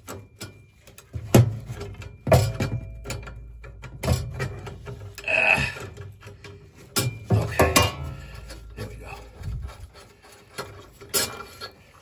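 Small channel-lock pliers clicking and clanking against the nut and metal tubing of a gas boiler's pilot assembly as the nut is worked loose to free the thermocouple. The sound is a string of irregular sharp metallic clicks and knocks.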